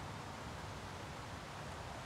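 Quiet, steady outdoor background noise, a faint even hiss with no distinct sounds.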